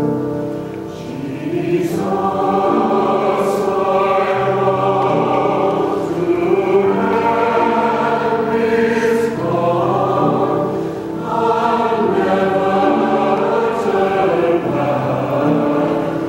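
Mixed church choir singing an anthem, the voices coming in strongly about a second and a half in and holding long notes.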